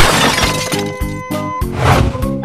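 A glass-shattering sound effect for a lamp breaking: one sudden crash that fades over about half a second, over background music with a steady beat. Another rushing burst of noise comes near the end.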